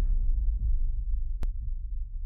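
A deep sub-bass boom closing the cinematic intro music, held and slowly fading, with a single sharp click about one and a half seconds in.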